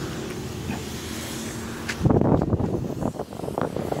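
Car engine running with a steady low hum, then from about two seconds in a louder rough rumble of wind and handling noise on the phone's microphone.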